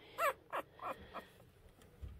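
A young Havapoo puppy crying in short high-pitched squeaks: one clear cry just after the start, then a few fainter ones over the next second.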